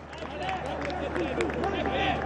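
Several voices shouting at once as a goal goes in, building up in level over the two seconds.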